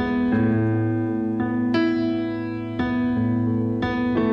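Keyboard playing a slow instrumental passage of a piano ballad: sustained chords with deep bass notes, a new chord struck about once a second, no voice.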